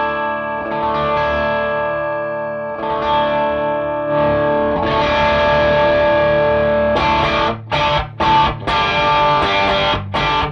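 Gibson SG electric guitar with humbuckers played through a Wampler Cranked OD overdrive pedal into a Matchless Chieftain valve amp, giving an overdriven tone. It strums held, ringing chords, then switches to short, choppy chord stabs with breaks between them from about seven seconds in.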